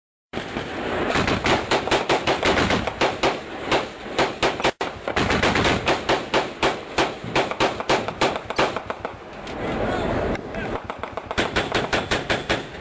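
Automatic gunfire in long strings of rapid shots, several a second, easing off briefly about nine to ten seconds in before picking up again.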